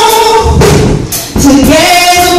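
A young girl singing a gospel song into a microphone, holding long notes over live drums, with a short break about a second in before the next phrase begins, rising in pitch.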